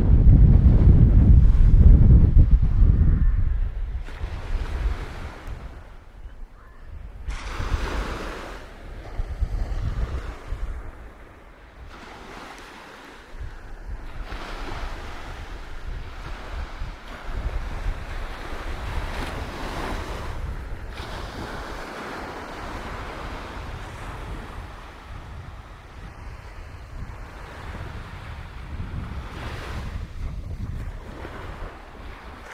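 Small North Sea waves breaking and washing up a sandy beach, the surf swelling and falling away every few seconds. Wind buffets the microphone, loudest in the first few seconds.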